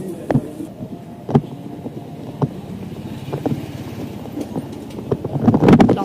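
Outdoor street noise heard while walking with a handheld camera: a steady low rumble with wind on the microphone, and sharp knocks about once a second from footsteps and handling of the camera.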